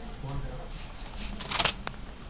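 Eurasian red squirrel scrabbling over a computer keyboard and mouse as it pounces at a hand: a short, loud scratchy rustle about one and a half seconds in, then a sharp click.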